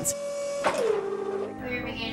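Motors of a small robotic arm whining as it moves: a steady tone, then a pitch that drops and holds before stopping, with music underneath.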